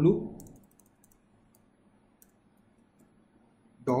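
Faint, scattered computer keyboard key clicks from typing into a web browser's address bar, mostly in the first half, following the end of a spoken word.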